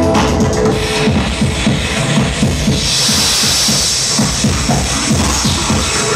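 Loud live electronic music played by a band on electronics, with a fast pounding beat. A held tone fades out about a second in, and a bright hiss of high noise swells up about three seconds in.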